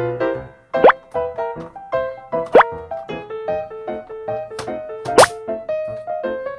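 Cheerful children's background music with a bouncy melody, broken by three quick rising 'bloop' sound effects, the loudest sounds: about a second in, at two and a half seconds, and just after five seconds.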